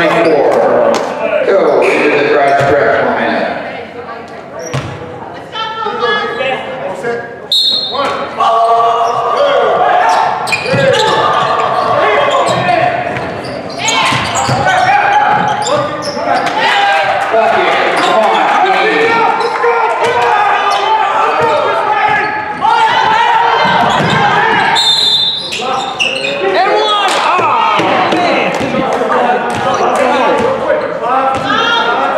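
A basketball bouncing on a hardwood gym floor amid indistinct chatter and shouts from spectators and players, echoing in a large hall.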